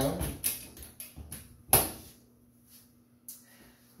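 Latches on the closed lid of an AWT Pro Light LED exposure unit being clamped shut: a few light clicks, one sharp clack a little under two seconds in, then two faint ticks.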